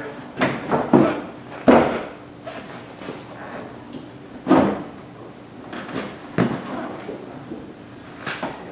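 Plastic front bumper cover being pushed and worked into place by hand, giving a handful of short, sharp plastic knocks and clicks, the loudest about two seconds in.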